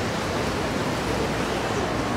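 Steady, even background noise of the event space, with no clear voice or music standing out.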